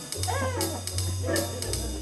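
Electronic organ playing jazzy music over a stepping bass line, with a short sliding, wavering pitch-bent sound about half a second in.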